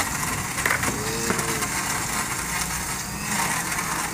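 Countertop electric blender running steadily, blending dragon fruit juice with ice.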